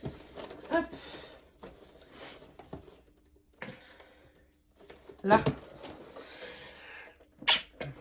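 A woman sneezes near the end, after a few seconds of soft rustling of ribbon and cardboard as a bow is tied on a box.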